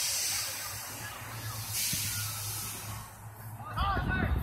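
Two spells of hissing noise, one at the start and one about two seconds in, over a low steady hum; a man's shout begins near the end.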